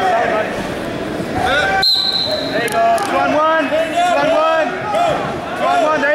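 Several people talking and calling out in a large echoing gym, with a short steady high-pitched tone about two seconds in.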